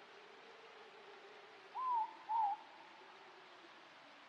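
An owl hooting twice in quick succession, two short notes about half a second apart, each rising then wavering down in pitch. Behind it is a steady hiss of night-forest ambience.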